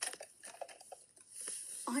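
Faint clicks and light rustling from an original Bop It toy being played by hand.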